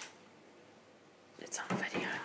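Quiet room with a brief click at the start, then hushed, indistinct voices beginning about three-quarters of the way in.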